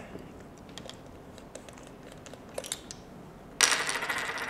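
Faint light clicks and taps of the small bird box camera and its cables being handled on a desk, as its front cover is opened to reach the lens. Near the end the sound steps up suddenly to a steady hiss.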